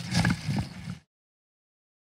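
About a second of close, knocking handling noise as the camera is held and moved, which then cuts off abruptly to complete digital silence.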